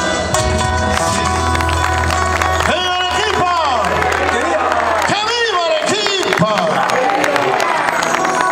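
Live band music from acoustic guitars and a bass guitar, with a held low bass note that stops about five seconds in. A man's voice comes in over the band about three seconds in.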